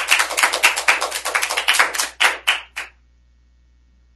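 Applause from a small audience: distinct, sharp hand claps in quick succession that die away about three seconds in.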